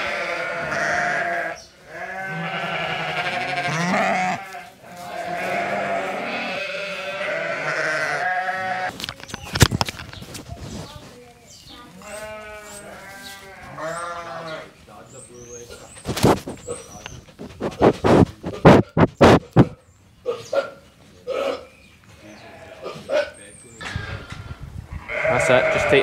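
Sheep bleating: several long, wavering bleats in the first nine seconds, then a shorter run of bleats around the middle, followed by a string of sharp knocks and clicks.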